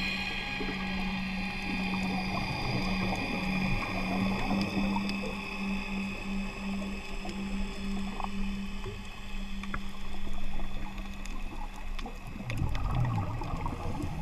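Underwater sound picked up by a diver's camera: a steady low hum that stops about twelve seconds in, then the rumble of a scuba diver's exhaled bubbles from the regulator near the end.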